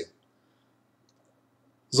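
Near silence with a faint steady low hum, between a man's speech breaking off at the start and starting again near the end.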